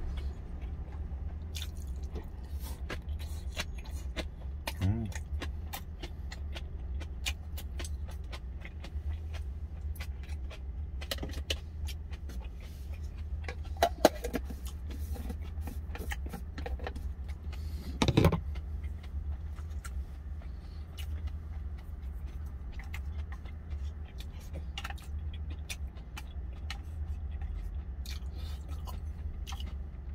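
Eating sounds: chewing, with scattered clicks of wooden chopsticks and a plastic food container and its lid, a couple of them louder. Under them runs the steady low hum of the truck's idling engine in the cab.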